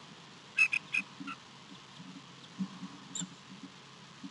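Bald eagle giving short, high-pitched peeps on the nest: four quick notes about half a second in, then a single thinner, higher note near the end, over soft low rustling of nest straw.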